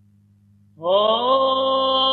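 Solo male Byzantine chanter in the second mode (Echos B'), coming in about a second in with a slight upward slide into a long held note, after a faint low hum.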